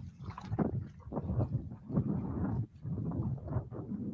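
Wind buffeting the microphone on an open fishing boat, in uneven gusts, with the low rumble of choppy water against the hull.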